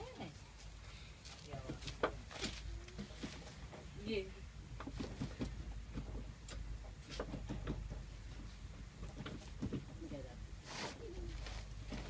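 Indistinct voices in short snatches, with scattered knocks and clicks from people moving about in a tuk tuk and a steady low rumble underneath.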